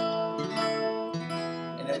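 Acoustic guitars strumming chords and letting them ring. A new chord is struck about a second in and rings on, slowly fading.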